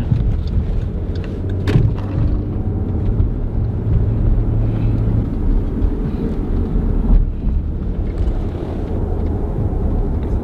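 Steady engine and tyre rumble of a moving car, heard inside its cabin, with a faint low hum in the first half. A single sharp click a little under two seconds in.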